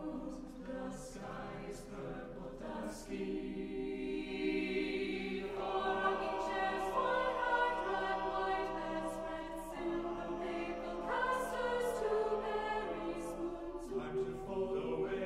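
Eight-part mixed a cappella choir (sopranos, altos, tenors, basses) singing in English. The upper voices sing the words over a sustained 'Ah' held by the tenors and basses, and the sound swells from soft to loud about halfway through.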